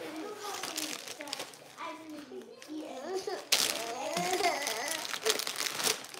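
Plastic cracker wrapper crinkling as it is handled and opened, with sharper rustles about halfway through and near the end. A small child's voice vocalizes over it in short high-pitched bits.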